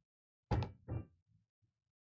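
Pool ball dropping into a pocket of a coin-op Valley bar table with a sharp knock about half a second in, followed by a second, softer knock.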